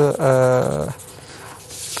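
A man's drawn-out hesitation sound, 'uhh', held for almost a second, then a short quiet pause before he speaks again.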